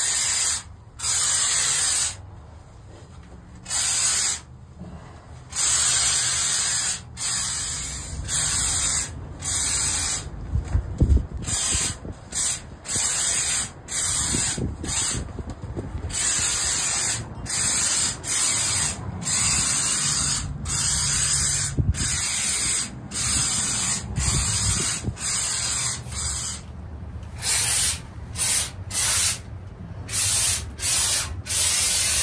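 Spray foam insulation gun hissing in many short bursts, each trigger pull lasting about a second with brief pauses between, as foam is sprayed into wall cavities.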